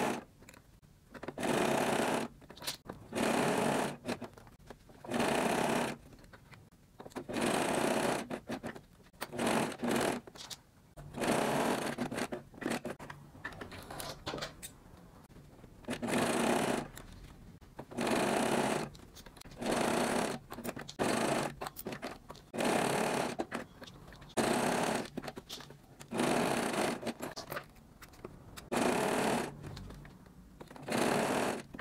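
Domestic sewing machine stitching a small zigzag in short runs of about a second, stopping and starting over a dozen times as elastic is sewn onto lycra.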